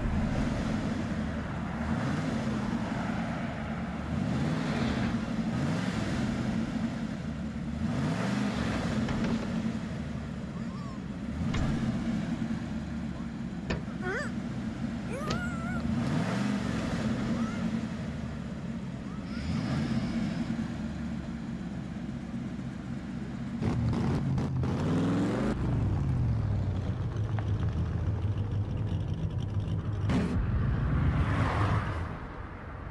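Pontiac Trans Am V8 engine idling with a rumble and revved again and again, the pitch rising and falling every few seconds. It gets louder about two-thirds of the way through.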